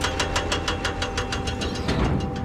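Heavy machine engine running with a rapid, even clatter of about seven knocks a second.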